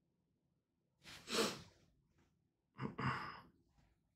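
A man breathing out audibly twice into a close microphone, two short sigh-like breaths, the first about a second in and the second near three seconds in.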